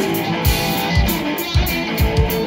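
Live band playing an instrumental passage: two electric guitars strumming and picking over a drum kit, the kick drum keeping a steady beat about twice a second with cymbals above.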